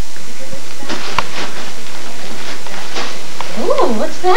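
Light crackles of wrapping and tissue paper handled by a baby, then near the end a baby's high squealing call rising and falling in pitch.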